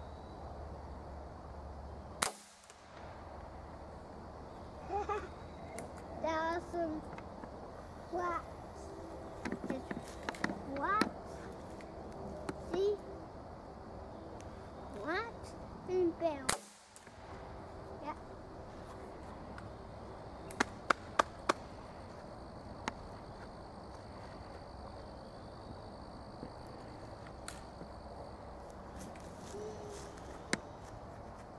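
Two sharp shots from a break-barrel spring-piston pellet rifle, about fourteen seconds apart. A few quick light clicks follow some seconds after the second shot.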